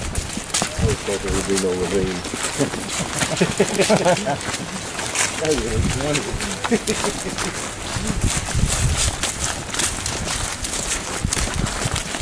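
A group of people walking over dry leaf litter on a forest floor, with an irregular crunching of many footsteps.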